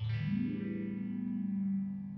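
Electric guitar through an envelope filter pedal, struck once. The filter sweeps the tone open and back closed, like an auto-wah, as the note rings on and slowly fades.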